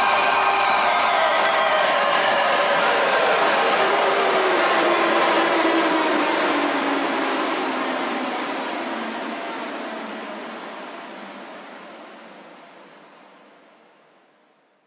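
Electric guitar effects wash, a dense drone whose pitch slides steadily downward as a knob on an effects pedal is turned. It fades out gradually over the second half.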